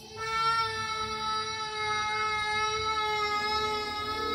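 A child's voice holding one long, steady high note into a handheld microphone.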